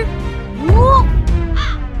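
A woman's drawn-out spoken word rising in pitch, followed about one and a half seconds in by a short crow caw, a comic sound effect for an awkward silence, over soft background music.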